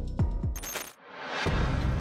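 Background music breaks off with a short, bright metallic ring like a dropped coin. After a brief near-silent gap, a swell of noise rises as a new clip's sound starts, typical of a transition effect between clips.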